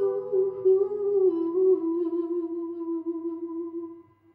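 A girl's voice singing the final held note of a pop ballad into a handheld microphone. The note wavers in pitch at first, then holds steady and fades out just at the end.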